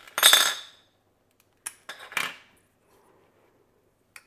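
Plastic and metal clicks and clatter as an NVMe SSD is pulled out of an Orico USB enclosure and its parts are handled. The loudest is a clattering burst just after the start, followed by two sharper clicks about two seconds in.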